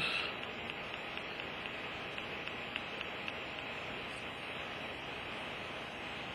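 Steady hiss with faint light ticks scattered through it every half second or so: a stylus tapping keys on a tablet's touchscreen keyboard.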